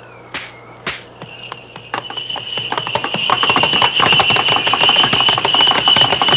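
Bells ringing: a steady high ring over a fast rattle of strikes that starts about a second in and grows louder. It is preceded by a short falling whistle and two clicks.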